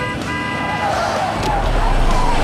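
A car horn sounding in a steady tone, with a short break near the start, that stops about a second in. A deep rumble of a car on the road then builds up.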